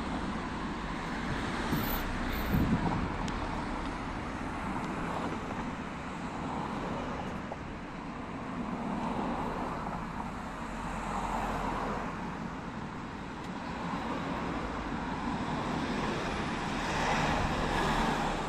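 Road traffic: cars passing along the roadway beside the walkway, their tyre and engine noise rising and falling as each one goes by. There is a brief thump about two and a half seconds in.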